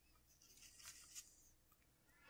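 Near silence, with a faint scrape and rustle from about half a second to just past a second in as a stainless steel fidget spinner is pulled out of its dense foam packing insert.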